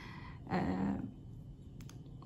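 A woman's drawn-out hesitation filler "eee", held on one flat pitch for about half a second, then low room tone with a couple of faint clicks near the end.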